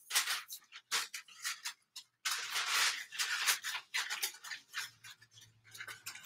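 Sheets of sublimation transfer paper and blowout paper rustling and crinkling as they are handled around a freshly heat-pressed lure: a string of short rustles, with a longer one about two seconds in.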